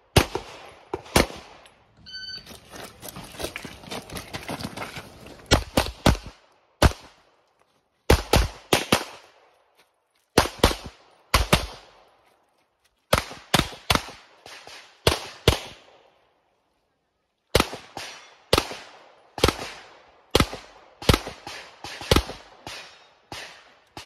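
Competition pistol fire during a practical shooting stage: shots in quick pairs and short strings of two to four, separated by pauses while the shooter moves to new positions, each crack trailing off briefly.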